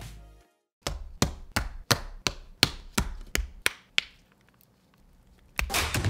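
A run of about ten sharp knocks, evenly spaced about three a second, fading out after about four seconds. Background music fades out at the start and comes back in near the end.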